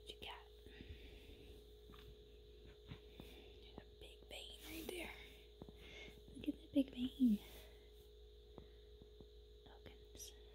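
Quiet whispering and breathy murmurs, with a few short spoken syllables about two-thirds of the way in, over a steady faint hum and small handling clicks.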